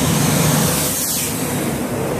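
A truck with an aluminium dump trailer passing close by on the road: its engine hum and the rush of its tyres and air swell to a peak about a second in as it draws alongside.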